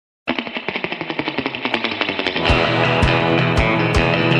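Surf-rock song intro: a fast run of rapidly repeated picked electric guitar notes. About two and a half seconds in, the full band and drums come in with a steady beat.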